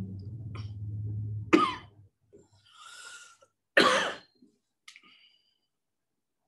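A woman coughing twice, about a second and a half in and again near four seconds, with a breath drawn between the coughs.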